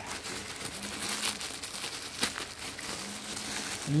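Plastic packaging crinkling and rustling with sharp crackles as a parcel wrapped in a plastic bag and clear plastic wrap is handled and opened by hand.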